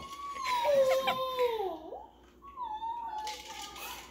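A dog whining: one long high whine that slides down in pitch at its end, then a second, shorter whine about two and a half seconds in.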